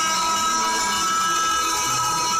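Live band music over a concert PA, heard from within the crowd, with one high note held steady throughout.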